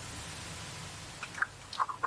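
A person sniffing, a long breath in through the nose lasting about a second, followed by a few small mouth clicks near the end.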